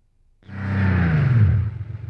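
A small car, a Maruti 800 hatchback, driving up and slowing to a stop. Its engine note falls steadily in pitch over about a second and a half, with a rush of tyre and air noise, and fades out near the end.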